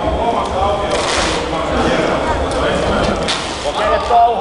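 Indistinct voices of coaches and spectators calling out and talking over one another, with no clear words.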